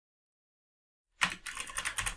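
Dead silence for about the first second, then a quick run of keystrokes on a computer keyboard as code is typed.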